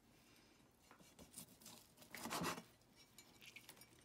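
A cleaver slicing through baked char siu pork on a bamboo cutting board: a few faint cuts, then a louder half-second slice a little past halfway, with light clicks of the blade on the board near the end.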